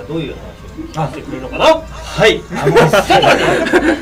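Speech only: people talking, with some chuckling.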